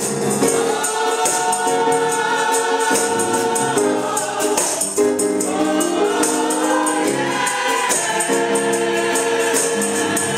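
Gospel choir singing sustained chords, with organ accompaniment and a tambourine played in a steady beat. The chords break off and start new phrases about four and five seconds in and again near eight seconds.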